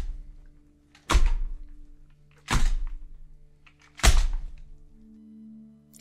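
Sound effect of a heavy wooden door slamming shut again and again: four loud thuds about a second and a half apart, each dying away, over a low steady music drone.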